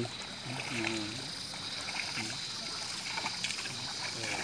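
Water and mud sloshing as a water buffalo drags a wooden plough through a flooded rice paddy.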